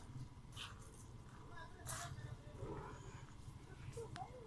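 Faint distant voices over a steady low rumble, with two short scuffing noises about half a second and two seconds in.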